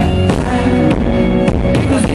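Live pop-rock band playing loudly, with drum hits sounding regularly through the mix of guitars and other instruments.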